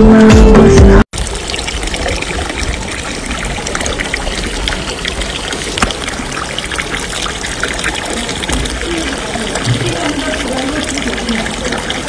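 Loud music for about the first second, cut off abruptly; then steady trickling and lapping of water in a pool, with faint voices near the end.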